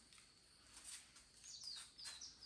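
Faint bird chirps: a short run of quick, high notes, each dropping in pitch, about a second and a half in, over otherwise near-silent surroundings.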